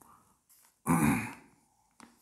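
A man clearing his throat once, a short loud burst about a second in.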